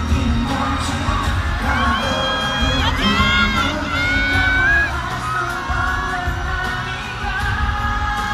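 Live pop concert music with singing, heard from within the audience, with a crowd of fans screaming shrilly over it for a few seconds from about two seconds in.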